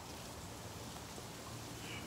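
Faint, steady outdoor background noise: an even hiss with no distinct sounds standing out.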